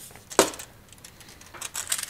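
A sharp metallic click about half a second in, then a few lighter clicks and scrapes near the end: a steel tape measure being handled and laid against a metal TV wall-mount bracket.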